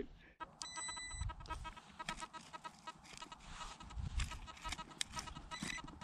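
Faint electronic beeping from a metal detector: one held tone about half a second in and again near the end, with short repeated beeps between, the sign of a buried metal target near the coil. A spade digging into pasture turf gives a few soft low thuds.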